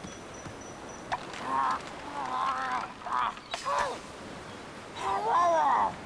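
Cartoon watermelon creatures' wordless, high-pitched vocalizations: several short murmured calls starting about a second in, then one longer call that rises and falls near the end.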